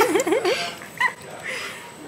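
A young child's wordless voice, a quick warbling up-and-down hum, followed by a short high squeak about a second in.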